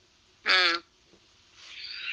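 A man's voice making one short pitched syllable about half a second in, then a soft breathy hiss near the end.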